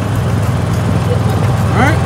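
Golf cart driving along a paved street: a steady low rumble of its motor and tyres on the road.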